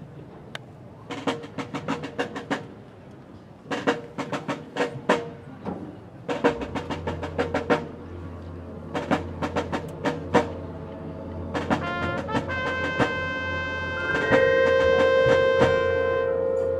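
Marching band show opening: clustered snare-drum strokes and rolls in short groups with pauses, a low sustained drone entering about six seconds in, then brass chords building to a loud, held chord near the end.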